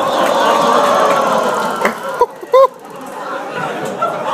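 Taser discharge: a steady train of rapid electrical clicks from the probes in two men's backs, with the men crying out twice in short yelps a little past the middle, over loud talking from onlookers.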